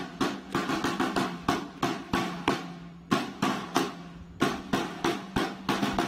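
Boots of a file of soldiers marching in step on stone paving: a string of sharp footfalls, two to four a second, over a steady low hum.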